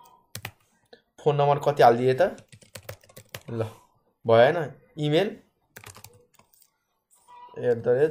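Typing on a computer keyboard: irregular runs of keystroke clicks as data is entered, with short phrases of speech in between, the speech being the loudest sound.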